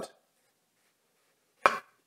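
Near silence between a man's spoken phrases, broken near the end by one short vocal sound just before he speaks again.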